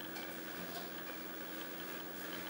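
Faint handling noise: a few light ticks as a rubber L-tube is worked onto a diaphragm air pump's outlet and its wire clamp fitted, over a low steady hum.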